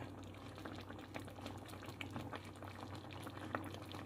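Pepper steak in brown gravy simmering in a pot: faint bubbling with many small scattered pops, over a low steady hum.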